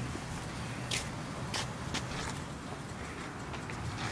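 Steady outdoor background hum with a few brief scuffing clicks.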